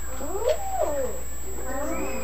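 Several young children making drawn-out "ooh" sounds, high voices that glide up and down in pitch and overlap one another.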